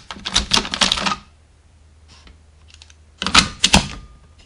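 Quick clusters of hard plastic clicks and clacks from DX Kamen Rider W toy belts being handled: one cluster in the first second on the Double Driver as its Gaia Memories are gripped, and another short cluster about three seconds in as a Gaia Memory is seated in the Lost Driver's slot.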